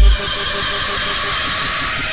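Breakdown in a hardtekk track: the pounding kick and bass cut out just after the start, leaving a steady hiss of synthesized noise with a quick pulsing synth note underneath.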